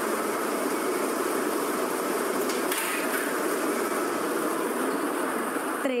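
Air-blown lottery ball machines running: a steady rush of blower air with many plastic balls rattling and clattering inside the clear acrylic mixing chambers.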